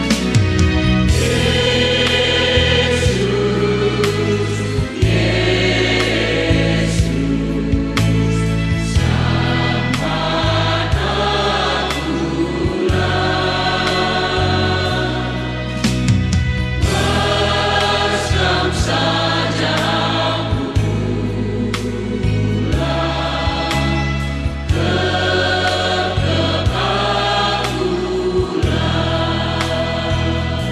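A church choir sings a Karo-language hymn in harmony over a steady instrumental accompaniment with sustained bass notes.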